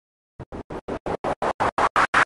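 Opening build-up of a hard-bass DJ remix: after a brief silence, a run of short chopped noisy hits, about six a second, getting steadily louder.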